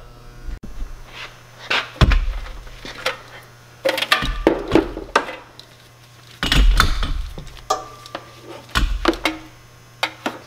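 Handling noise: a battery charger and its clamp leads being moved about on a zero-turn mower, with four heavier thumps about two seconds apart and lighter clatter between them. A steady low mains hum runs underneath.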